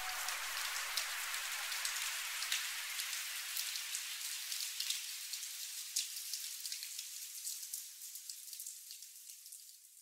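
Quiet crackling, hissing noise texture at the tail of an electronic track, full of small clicks, left on its own once the beat has stopped. The low end thins out steadily and it fades to silence about nine and a half seconds in.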